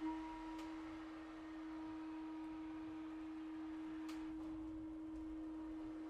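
A single soft note from one instrument of a chamber ensemble, held steadily and almost pure in tone. It begins at the very start and does not change in pitch.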